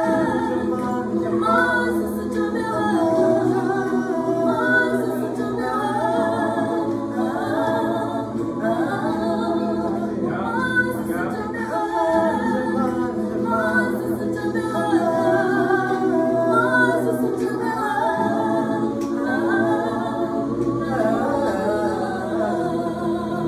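Mixed-voice gospel choir singing a cappella in harmony, lower voices holding steady notes beneath a moving upper melody.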